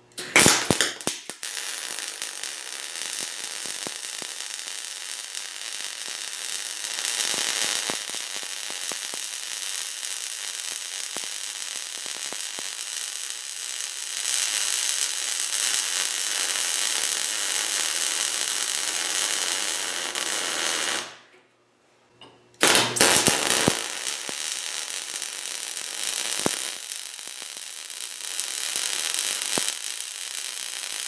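MIG welding arc from a Millermatic 350P, a steady crackling hiss as a bead is run at 19 volts and 200 inches per minute wire feed on quarter-inch steel. It stops about 21 seconds in, and after a short silence a second arc strikes with a loud crackle and runs on at 20 volts and 220 inches per minute.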